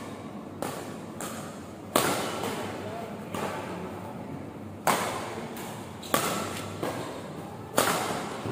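Badminton rackets striking a shuttlecock in a doubles rally: about nine sharp cracks, irregularly spaced half a second to a second and a half apart, each echoing briefly in a large hall.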